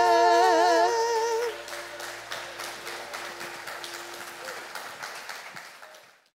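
Two women's voices hold the final note of a song with vibrato, ending about a second and a half in. Then the congregation applauds, the clapping fading out.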